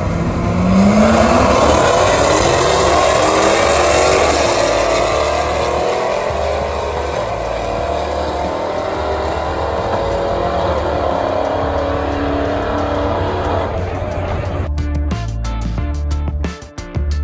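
Two cars launching off the line at a drag strip and accelerating hard, their engines revving in rising sweeps and fading as they run off down the track. Music with a steady beat plays underneath and takes over near the end.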